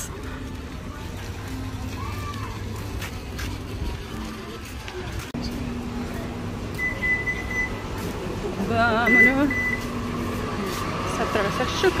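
A walk-through metal detector at a hotel entrance beeping twice, each a steady high tone of about a second, over a low steady hum. Before it there is a stretch of even outdoor background noise.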